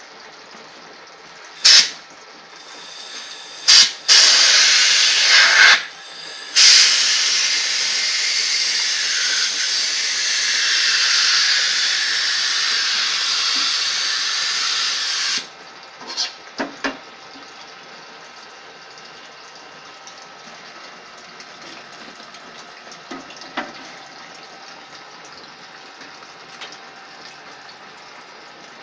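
Compressed-air blow gun blowing into a beeswax foundation-sheet mould to free the pressed wax sheet. There are two short blasts, then a long steady hiss of about ten seconds that cuts off suddenly, followed by a few light clicks.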